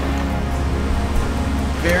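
Background music with a steady deep bass, over an even rushing noise from whitewater alongside the canoe.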